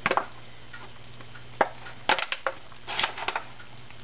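Disposable aluminium foil pan crinkling and crackling in scattered short bursts as hands roll and press stuffed fish fillets in it.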